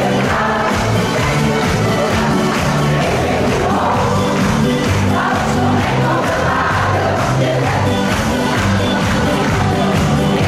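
Choir singing a lively song over an accompaniment with a steady bass beat, mixed with the noise of a large crowd.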